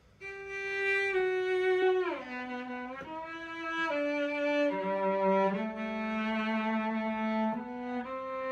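Cello played with the bow, standing without a strap: a slow phrase of about seven sustained notes in the middle register, with a sliding drop in pitch about two seconds in.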